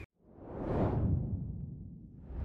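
A whoosh transition sound effect: after a brief silence, a swell of noise rises to a peak just under a second in, then fades away.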